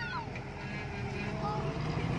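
Faint children's voices calling out, heard over a steady low hum.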